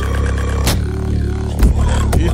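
Two-person vocal beatbox performance: a deep, sustained vocal bass drone under pitched vocal tones, punctuated by a couple of sharp snare-like clicks.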